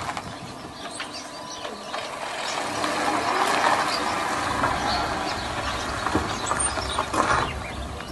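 Volkswagen Gol hatchback moving slowly over a dirt road, its engine running and its tyres crunching on the ground. It grows louder a couple of seconds in, with scattered small clicks.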